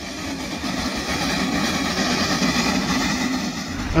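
Steam saddle-tank locomotive working a passenger train past: a steady rushing sound of exhaust steam, building a little over the first second.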